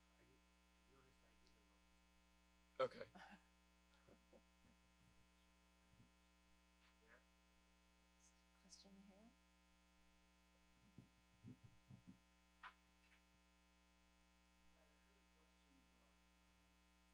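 Near silence with a steady electrical mains hum, broken by a sharp thump about three seconds in and scattered faint knocks and rustles of a handheld microphone being handled.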